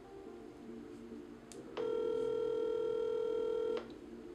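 Telephone ringback tone of an outgoing call heard through the phone's speaker: a short click, then one steady two-second ring, the line ringing while waiting to be answered.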